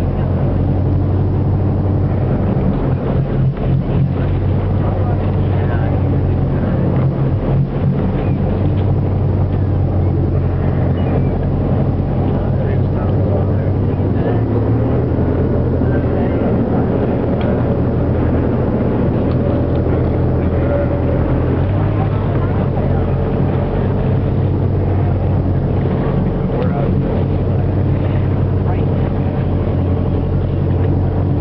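Whale-watching boat's engine running steadily, a loud, constant low hum under the wash of wind and water.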